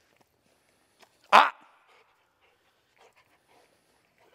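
A yellow Labrador retriever gives one short, loud bark about a second in; the rest is only faint small sounds.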